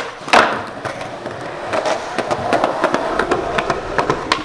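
Skateboard on concrete: a sharp clack of the board hitting the ground about a third of a second in, then the wheels rolling over the concrete with scattered small clicks.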